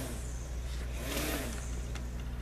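Lawn mower engine running outside, heard through an open window as a steady low drone.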